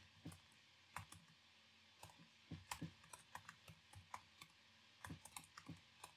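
Faint computer keyboard typing: irregular key clicks, some in quick little runs, with short pauses between.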